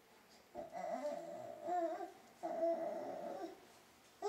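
A baby babbling: two drawn-out, high-pitched vocal sounds, one about half a second in and one in the second half.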